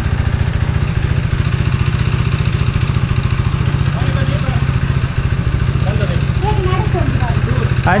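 A vehicle engine idling steadily, with a fast, even low pulse throughout. Faint voices come in partway through.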